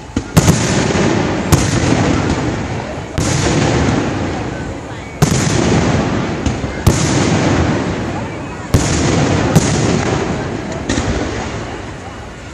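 Aerial fireworks shells bursting overhead: about eight sharp bangs a second or two apart, each trailing off in a long fading echo.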